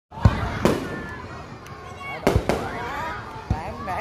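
Fireworks going off, with about five sharp bangs (two close together near the middle) and a crackling hiss between them.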